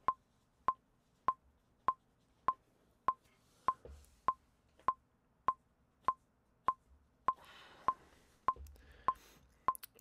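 Metronome ticking steadily at 100 beats per minute, a little under two light ticks a second, setting the practice tempo.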